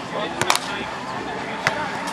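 A volleyball being hit by players during a rally: a sharp smack about half a second in, doubled almost at once, then another a little after a second and a half, over background chatter.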